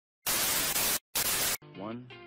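Loud TV static hiss in two bursts with a brief gap between them, cutting off suddenly at about one and a half seconds, followed by a short rising tone near the end.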